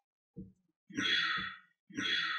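Breathy vocal sounds like sighs: a short one, then two longer ones about a second apart.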